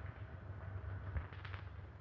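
Background hum and crackle of an old 1930s film soundtrack, with a few faint clicks about a second and a half in.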